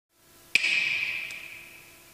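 One sharp finger snap, followed by a bright ringing tail that fades over about a second and a half.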